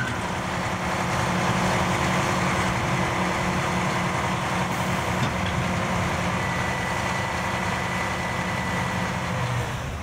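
Scania hook-lift truck's diesel engine running steadily while the hook arm pulls the tipped container down onto the truck bed. A thin high-pitched whine joins for about two seconds past the middle.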